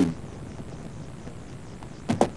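A pause between lines of dialogue: only a faint, steady background hiss, with the tail of a spoken word fading out at the very start.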